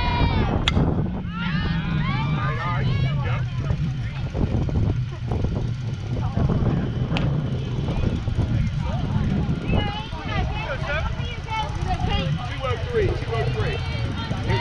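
Players and spectators calling out at a softball game, with a sharp crack about a second in and another about seven seconds in, over a steady low rumble.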